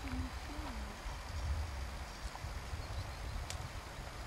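Wind buffeting the microphone in uneven low gusts over a steady outdoor hiss, with a few faint high ticks.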